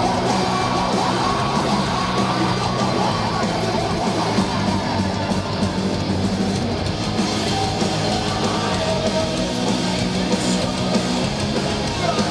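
Live rock band playing loud and steady: distorted electric guitars, bass and drums with a singer's shouted vocals, heard through the PA from within the audience.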